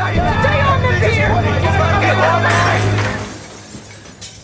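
Film soundtrack of men shouting over one another, over a low steady hum. It fades away about three seconds in.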